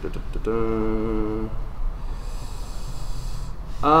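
A man's hum held on one steady pitch for about a second, then quieter room noise with a soft hiss of breath.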